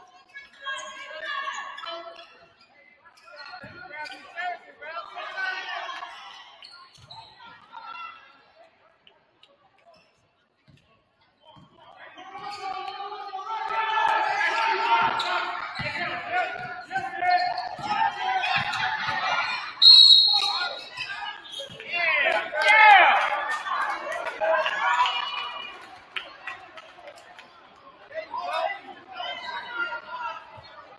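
Basketball game sounds in a gym: a ball bouncing on the hardwood, sneakers squeaking and voices from the bench and stands. After a near-silent couple of seconds the play gets louder, and a short high whistle blast, like a referee's whistle, sounds about twenty seconds in.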